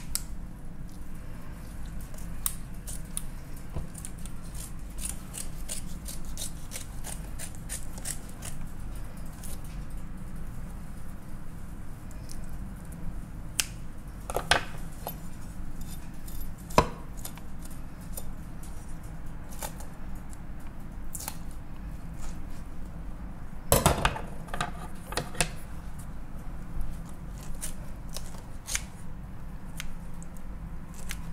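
Kitchen shears snipping through an iguana's skin and flesh on a wooden cutting board: scattered sharp snips and clicks of the blades, with a louder cluster about three-quarters through, over a steady low hum.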